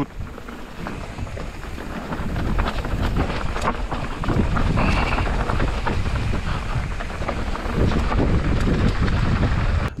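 Mountain bike descending a rocky dirt trail fast: tyres crunching and skittering over loose stones, with the bike's chain and frame rattling and clattering over the bumps. Wind buffets the microphone throughout, and the noise builds from about two seconds in.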